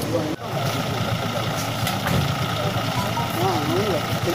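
Vehicle engine idling steadily, with people's voices around it.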